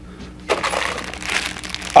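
Plastic candy bag crinkling as it is handled and lifted out of a cardboard gift box, starting about half a second in: an irregular crackle of the wrapper.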